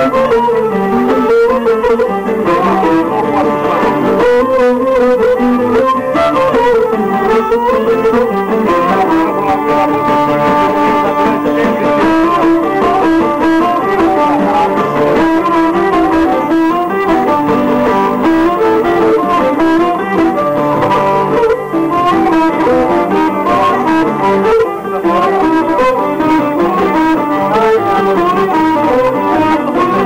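Live Cretan music: a Cretan lyra bowing a melody over acoustic guitar accompaniment, playing without a break.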